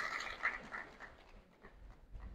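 The tail of a man's amplified voice dying away in a hall's echo, then near silence.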